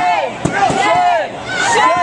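Loud, high-pitched shouting from people in a crowd, short cries repeating about twice a second, with a sharp knock about half a second in.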